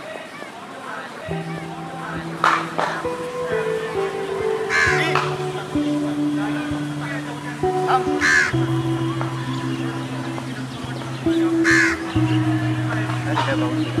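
Background music of slow, held chords that starts about a second in, with a crow cawing several times over it.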